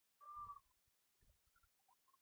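Near silence: room tone, with one brief faint sound about half a second in.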